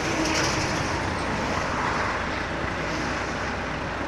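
Highway traffic: a steady rush of passing road vehicles, swelling slightly about halfway through as a vehicle goes by.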